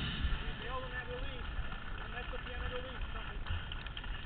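A distant voice calling out twice, faint over a steady low rumble of wind and outdoor noise on the microphone.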